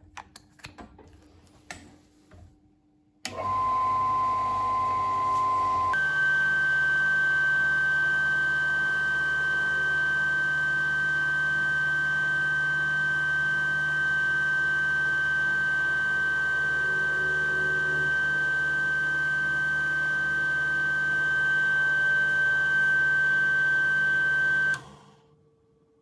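Proxxon PF 210 mill's motor running with its spindle turning, a steady high whine that steps up in pitch a few seconds after starting, while the mandrel is cleaned with an abrasive pad. It shuts off near the end.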